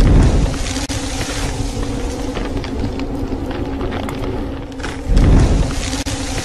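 Cinematic title-card sound effect: a deep booming whoosh at the start and another about five seconds in, over a steady low drone.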